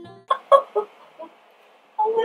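A few short, throaty, laugh-like vocal sounds from a woman in the first second, just after a music track's last chord fades out.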